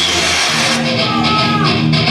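Rock entrance music with guitar and a steady drum beat of about four strokes a second, starting about half a second in, just after a man's recorded voice ends on the word 'world'.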